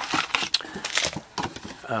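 A cardboard trading-card box being torn open by hand: a run of irregular crackles and clicks as the flap pulls free.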